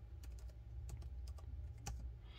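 Faint, irregular light clicks and taps, about seven in two seconds, from things being handled, over a steady low hum.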